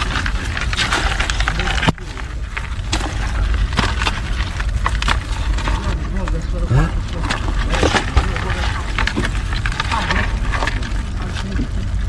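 Seawater splashing and dripping from a mesh crab-bait bag, with many small clicks and knocks as crabs are shaken off it into a plastic bucket.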